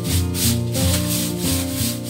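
Background music with sustained low notes and a melody, over repeated scratchy strokes of a long hand broom sweeping tiled paving, about two strokes a second.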